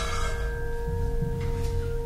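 Background music of held, ringing bell-like notes at several pitches, over a low rumble.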